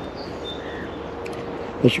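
Steady outdoor hiss with a faint steady hum underneath and a few faint bird chirps in the first second. A man starts speaking near the end.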